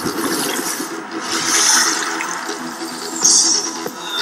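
Soundtrack of a television commercial: rushing-water effects over music, with two louder whooshing surges, about one and a half and three and a quarter seconds in.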